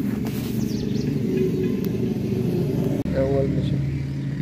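A steady low engine drone, like a motor vehicle running close by, with a voice heard briefly near the end.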